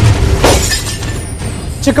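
Broadcast news 'breaking news' stinger sound effect: a loud crash with a glass-shatter effect about half a second in, dying away over the next second. A man's voice starts right at the end.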